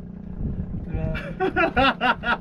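A boat engine running steadily at low speed, a low even hum. A man's voice comes in over it from about halfway through.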